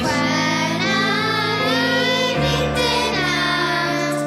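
A small group of children singing a Lucia song together, their voices coming in at the very start over a keyboard accompaniment.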